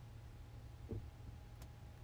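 Quiet background noise: a steady low rumble, with a faint soft click about a second in.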